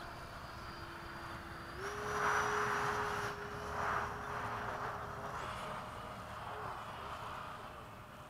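Electric ducted fan on a 70mm RC F-16 jet whining as it flies past, with a rush of air that swells about two seconds in and again around four seconds. The whine's pitch steps up about two seconds in and again after five seconds.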